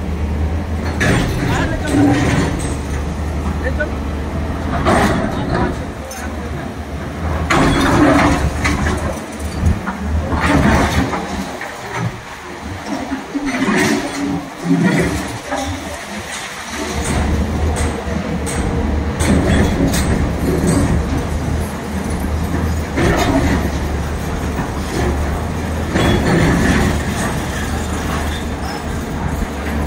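Indistinct voices over a steady low engine drone that drops out for several seconds midway, with occasional knocks and bangs.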